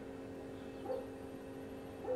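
Faint steady electrical hum with a brief faint whine about a second in.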